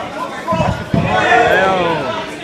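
Loud shouting voices in a large hall, with a dull thump about a second in.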